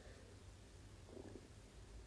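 Near silence: room tone, with one faint, brief soft sound a little after a second in.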